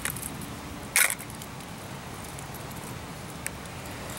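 Fishing lures and their metal treble hooks clinking against a plastic tackle box as one is picked out, with one short sharp clatter about a second in and a faint click later.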